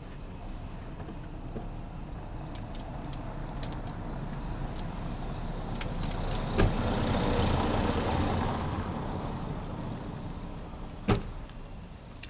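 A car passing by, its engine and tyre noise swelling to a peak about halfway through and then fading away. Two sharp knocks stand out, one near the peak and a louder one near the end that fits a car door being shut.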